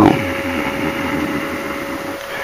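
A steady, even hum at one mid pitch from a running household machine, with a faint hiss under it.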